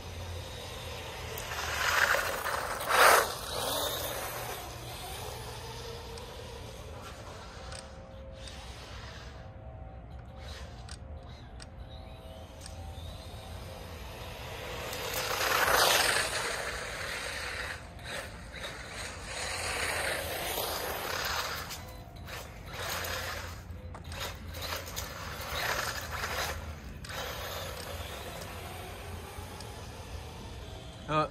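HAILBOXING 2997A brushless RC car driving on asphalt, its tyre and motor noise swelling up and fading away as it passes, about two seconds in and again near the middle, with smaller passes later. A sharp knock comes about three seconds in.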